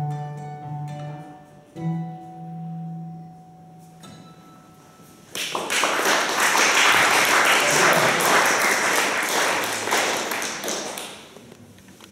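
Acoustic guitar playing the closing notes of a song, with a last chord struck about two seconds in and left to ring out. About five seconds in, audience applause starts, louder than the guitar, and fades away near the end.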